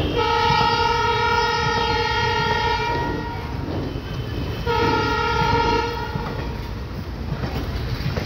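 A train horn sounds two steady blasts, a long one of about three seconds and then a shorter one a second and a half later, over the continuous rumble and wheel clatter of railway coaches rolling past.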